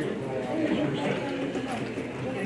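Indistinct chatter of several people talking at once in a room, with no single clear speaker.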